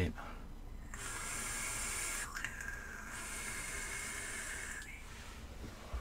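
A vape draw on a mechanical mod with a rebuildable dripping atomizer: a steady hiss of air being pulled through the atomizer and then breathed out as a thick cloud of vapour, lasting about four seconds with a short change partway through.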